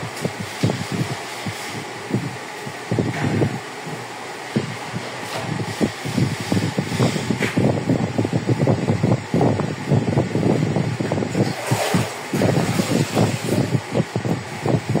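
Wet sponge wiping and scrubbing across ceramic wall tiles to clear dust off them, an irregular run of rubbing strokes that gets busier in the second half, over a steady background noise.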